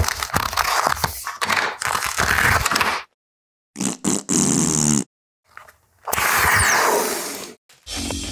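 Plastic vacuum-press bag being pulled open off a bent wood lamination, close-miked: crackling, crinkling and scraping of the plastic. About four seconds in there is a short buzzing tone, and near the end a longer rush of crinkling noise before the sound cuts off abruptly.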